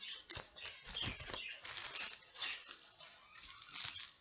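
Crinkling and rustling of packaging and craft items being handled, with pet budgerigars chirping in the background.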